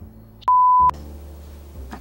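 A single short, loud 1 kHz beep about half a second in, lasting under half a second and starting and stopping abruptly: a censor bleep laid over a word.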